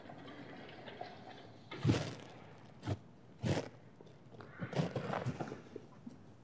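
A few separate knocks and thuds about a second apart, then a quicker run of softer knocks near the end, from a lecturer moving about at the chalkboards.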